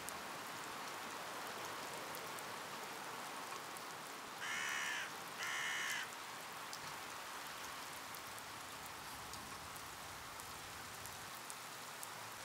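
A crow cawing twice, two harsh calls about a second apart, near the middle, over a steady faint hiss of light rain.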